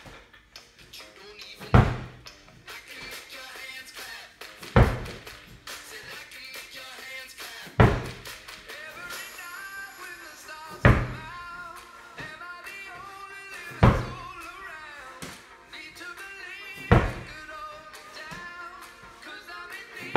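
Slam ball slammed onto a rubber floor mat about every three seconds, six heavy thuds in all, over background music with singing.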